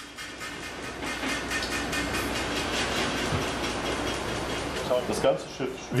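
Offshore supply vessel's bridge rattling and vibrating with a steady mechanical din over a low rumble, as the whole ship shakes violently. The shaking is the hull being driven into natural resonance at the propellers' raised rotor speed.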